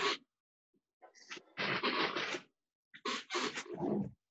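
A person breathing hard through several heavy exhales while doing Cossack squats. The breaths cut in and out, with dead silence between them.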